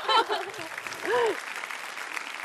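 Studio audience applauding, with a short exclamation from a voice about a second in.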